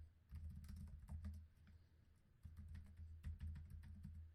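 Faint computer keyboard typing: two short runs of keystrokes with a pause of about a second between them, as two terminal commands are typed.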